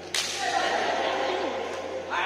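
A badminton racket strikes a shuttlecock just after the start: one sharp crack that echoes around the sports hall. Voices follow.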